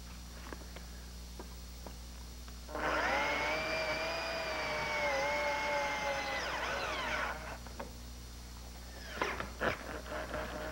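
Electric drill with a screwdriver bit driving a screw into a wooden bed post. The motor whines for about four and a half seconds, starting about three seconds in; its pitch dips slightly under load, then it winds down. A few light knocks of handling follow near the end.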